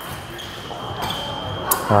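Fencing-hall sounds: footwork thudding on the floor and a single sharp blade click near the end, over background chatter. A faint, steady, high electronic tone runs through most of it and stops shortly before the click.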